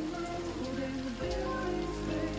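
Steady rain falling, with music of long held notes that shift slowly in pitch playing over it.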